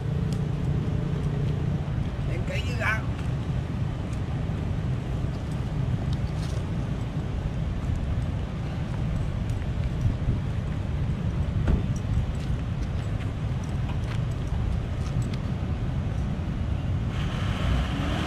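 Steady low outdoor rumble of wind and distant vehicle noise, with a brief faint voice about three seconds in.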